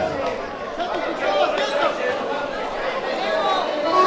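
Chatter of several people talking at once in a large hall, with no music playing.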